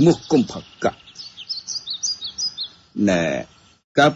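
Small birds chirping, a quick run of short, high calls lasting about two seconds between bits of speech.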